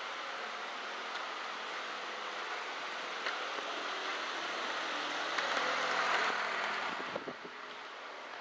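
Steady rushing background noise that grows a little louder around six seconds in and eases after seven, with a few faint clicks.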